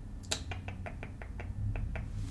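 Plastic pump nozzle of a hydrogen peroxide spray bottle being handled, giving a quick series of about ten sharp clicks, roughly six a second, the first the loudest.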